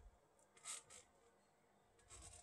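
Near silence: room tone, with one faint, brief rustle about two-thirds of a second in.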